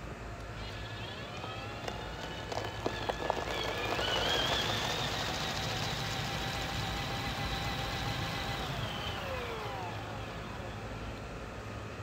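Power drill spinning a paint-covered canvas for spin art: its motor whine rises in pitch over the first few seconds as it speeds up, holds steady, then falls away as it slows to a stop about ten seconds in.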